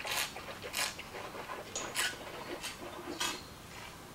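A mouthful of white wine being tasted: about five short, hissy slurps of air drawn through the wine to aerate it on the palate.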